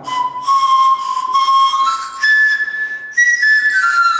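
Small handmade pan flute of cane pipes, each cut about half a centimetre shorter than the next, blown with breathy notes: a held low note, a jump up to higher notes about halfway, then a run of notes stepping back down near the end.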